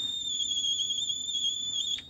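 Watkins-Johnson WJ-8711A HF receiver's speaker putting out a terrible high-pitched howl in synchronous AM mode: one steady, slightly wavering tone with a fainter overtone above it, cutting off near the end as the mode is switched. The fault sound is the same whatever the input and in every detection mode except ISB; the owner wonders whether the sideband audio IF has a problem, though he is not sure.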